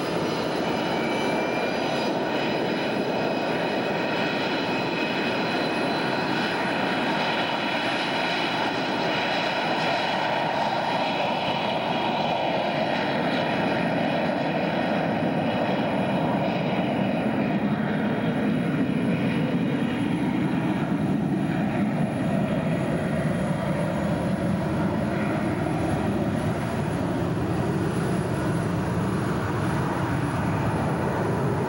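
Twin-engine US Air Force C-20 (Gulfstream) jet taking off: a continuous jet roar with high whining tones that fade as it goes, the roar settling into a deeper rumble in the second half.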